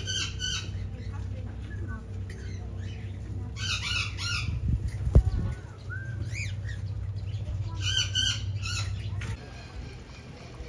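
Parrots squawking in several bouts of short, harsh calls. A steady low hum runs underneath and stops shortly before the end, and a single sharp knock comes about halfway through.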